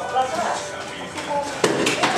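People talking inside a cable car cabin, with one sharp clack about one and a half seconds in followed by a brief high ring.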